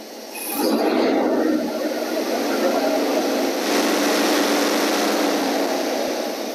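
Ford 289 V8 engine brought up from idle to about 1,700 rpm about half a second in, then held steady at that speed. The raised revs bring in the distributor's centrifugal advance, with timing reaching 34° total.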